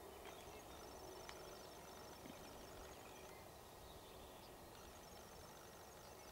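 Near silence: faint outdoor background with a faint, high, rapid pulsing trill that comes in twice, about a second in and again near the end. No crane call is heard.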